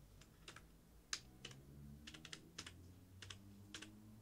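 Faint computer keyboard keystrokes, about a dozen short irregular clicks, some in quick pairs, as a short string of characters is typed.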